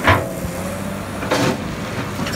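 Excavator running, its steel bucket scraping and crunching into gravel and stones, with two louder crunches: one right at the start and another about a second and a half in.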